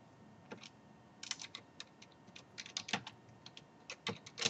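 Typing on a computer keyboard: keys clicking in quick, irregular runs, starting about half a second in.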